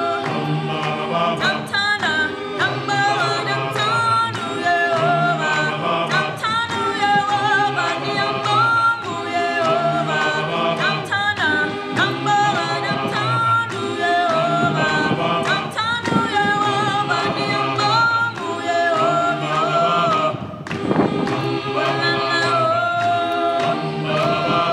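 Unaccompanied voices singing together in harmony, a cappella choir music with no instruments.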